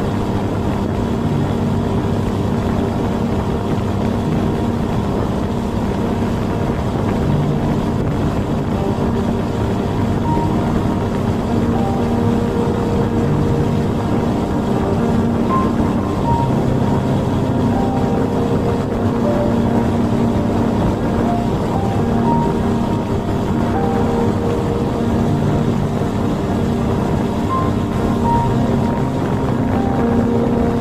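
Outboard motor of a small open boat running steadily under way, with music playing over it.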